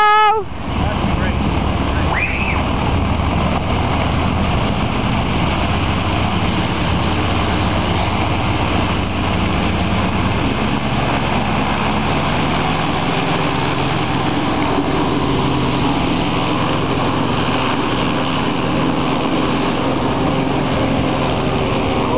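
Homebuilt hovercraft's gasoline engine and caged propeller running steadily as the craft leaves the beach and heads out over the water.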